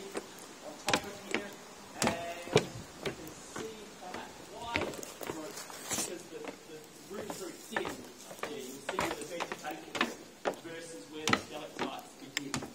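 Indistinct voices of a group of people talking, with scattered sharp knocks and taps at irregular intervals.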